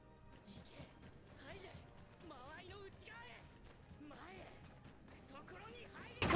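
Near silence, with faint voices and music underneath.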